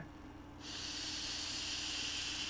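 A person blowing by mouth into the valve of an inflatable beach ball: one long, steady hiss of breath starting about half a second in.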